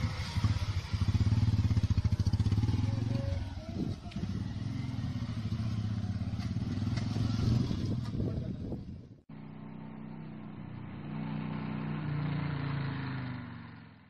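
Small commuter motorcycle engines running as the bikes pull away and ride off. About nine seconds in, the sound cuts abruptly to another pair of motorcycles, whose engine note swells and then fades out near the end.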